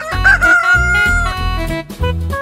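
A rooster's cock-a-doodle-doo crow: a short wavering start, then one long held note lasting about a second, over children's backing music with a steady beat.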